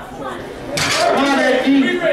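Voices in a large hall: low background talk, then a louder voice starts abruptly about three-quarters of a second in and carries on.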